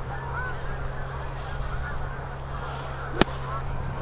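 A golf club splashing through the sand of a bunker to play the ball out: one sharp, short strike about three seconds in. Faint calls sound in the background.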